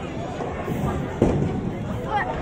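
Busy bowling alley background noise, with one sudden loud crack about a second in.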